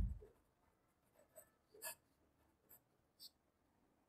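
Faint pen writing on paper: a few short scratches and taps of the pen tip as a line of an equation is written out.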